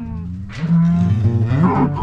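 A cow mooing, with acoustic guitar background music coming in near the end.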